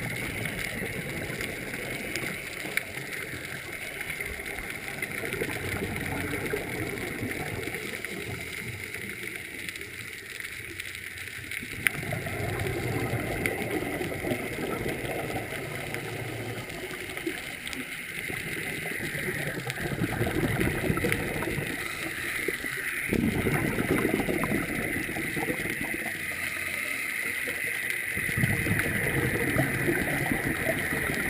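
A scuba diver breathing underwater through a regulator: exhaled bubbles that come in long bursts, starting abruptly every several seconds.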